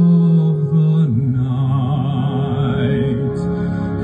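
A man singing live into a microphone over a backing track. He holds one long note for about a second, then the accompaniment carries on under a rising line.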